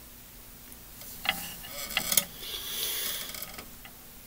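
A plaid flannel shirt rustling as the arms are raised and the hands run over the head, with a few light clicks, starting about a second in over faint room hum.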